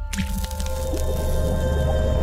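Intro logo sting: a liquid drop sound effect lands with a sudden wet splat, over a held musical drone with a deep low bass.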